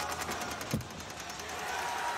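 A gymnast landing a high bar dismount on a padded landing mat: one dull thump about three quarters of a second in, amid scattered claps.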